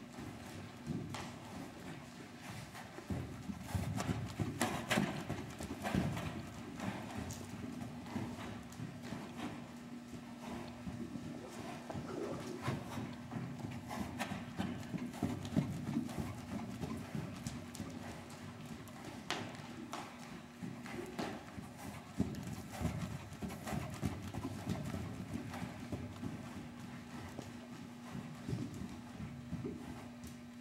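Hoofbeats of a Welsh Cob moving loose at a trot and canter on an indoor arena's sand footing, in an uneven run of strikes. A steady low hum lies underneath.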